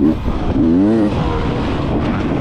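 Enduro motorcycle engine under the rider's throttle: it dips briefly, then revs up sharply with a wavering pitch, and settles lower about a second in as the throttle eases.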